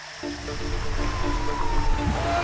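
Soundtrack music with a pulsing pattern of repeated notes and a slowly falling tone, starting about a quarter-second in over the low rush of whitewater rapids.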